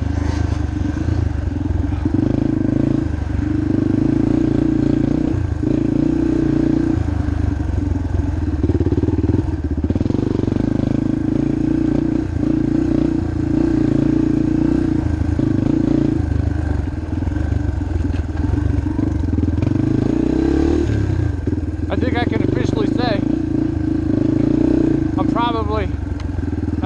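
Yamaha TTR230 dirt bike's single-cylinder four-stroke engine running under load on the trail, its note rising and falling with throttle and gear changes every second or two.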